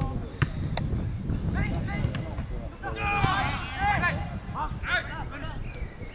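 Football players shouting to each other across the pitch, loudest about three seconds in, over a steady wind rumble on the microphone. Two sharp kicks of the ball sound within the first second.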